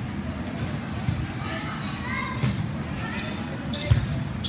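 Volleyballs thudding on a gym court, a few separate thumps, the loudest near the end, echoing in a large hall.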